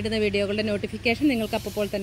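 A voice talking, with a hiss from a trigger spray bottle of homemade liquid fertilizer starting about a second in.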